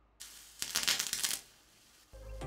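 Oxidized cesium (cesium superoxide) reacting violently with water: a short crackling, sputtering burst lasting under a second as the material spatters.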